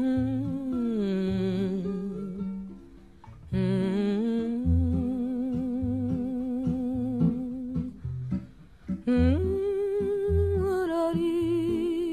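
Music: a voice humming a slow melody in long held notes with vibrato, over acoustic guitar with plucked bass notes. The humming comes in three phrases with short breaks between them.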